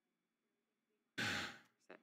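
A man sighs heavily, one loud breath out into the microphone about a second in, after near silence. A short faint sound follows just before the end.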